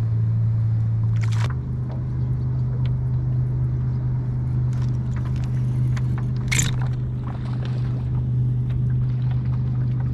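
A steady low drone, with a few light clicks and a sharper click about six and a half seconds in.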